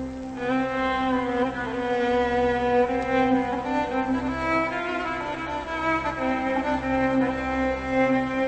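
Instrumental music: bowed strings play a slow melody over a held low drone, the instrumental opening of a Turkish devotional song.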